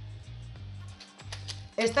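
Soft background music with a repeating low bass pulse, with a few faint clicks as a small plastic bag of metal corner protectors is handled. A woman's voice comes in near the end.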